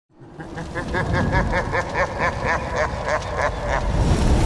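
Intro sound effect: a quick string of short pitched pulses, about four to five a second and slowing slightly toward the end, over a steady low rumble.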